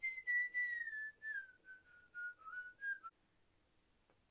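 A woman whistling idly through pursed lips: a short string of notes that drifts downward in pitch, then stops about three seconds in.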